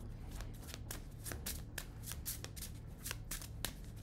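A deck of tarot cards being shuffled by hand: a fast, uneven run of light card clicks and slaps.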